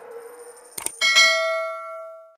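Subscribe-button sound effect: a sharp mouse click a little under a second in, then a bright bell ding that rings on and slowly fades.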